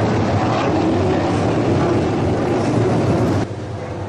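360 sprint cars' V8 engines running slowly on the cool-down lap after the checkered flag, a steady dense rumble. It cuts off abruptly near the end to quieter background noise.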